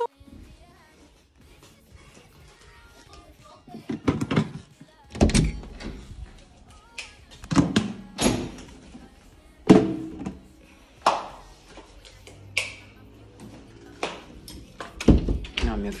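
A series of irregular thuds and knocks, about nine of them spaced a second or two apart, from someone moving about the house with a phone camera.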